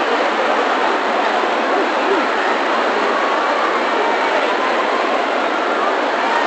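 Steady, loud din of a large arena crowd, many voices and calls mixed together, in the confusion after a loud bang.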